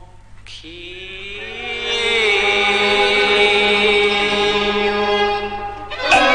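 A 1950s Cantonese opera recording: after a brief dip and a faint click, a pitched line rises, then settles about two seconds in into one long held note that lasts to the next phrase.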